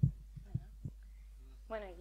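Handling noise from a handheld microphone: one sharp low thump, then a few softer knocks, over a steady low hum from the sound system. A woman starts speaking into it near the end.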